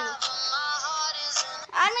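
Music with high-pitched, electronically altered singing; the voice slides up and down quickly near the end.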